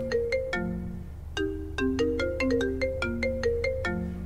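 Mobile phone ringtone, ringing for an incoming call: a melodic tune of short struck notes, one brief phrase, a pause about a second in, then a longer run that starts over near the end. A steady low hum lies underneath.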